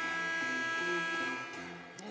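Arena game horn sounding one steady buzzing tone for nearly two seconds, the signal for a substitution at a dead ball.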